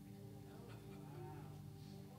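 Quiet room tone: a low, steady hum, with a faint wavering voice murmur in the middle.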